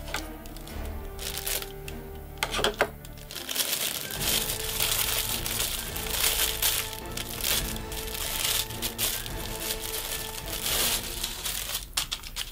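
Clear plastic bag crinkling as it is handled and a folded shirt is worked out of it. Background music with steady held tones plays underneath.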